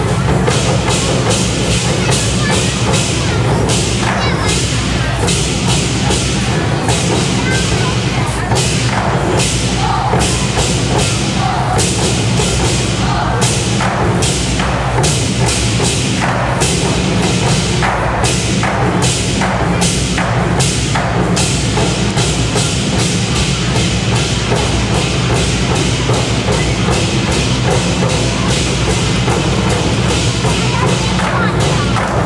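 Ensemble of red Chinese barrel drums beaten with wooden sticks, playing a fast, driving rhythm of loud strokes, with sharp wooden clicks mixed in among the drum hits.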